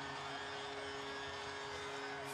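Arena goal horn sounding a steady chord of several low held tones after a goal, over a cheering crowd.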